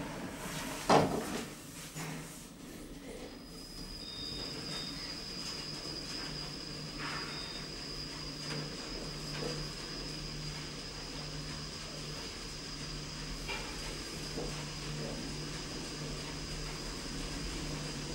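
Otis traction lift doors closing with a thump about a second in, then the car travelling with a steady low hum and a steady high whine, with a couple of short high beeps soon after it sets off.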